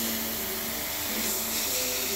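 Double-action airbrush spraying black paint: a steady hiss of air and paint from the nozzle.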